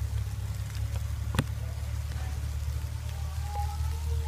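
A steady low hum with a faint crackle from a mass of crickets crawling and feeding on dry leaves and wet water spinach. There is one sharp click a little over a second in, and faint thin tones near the end.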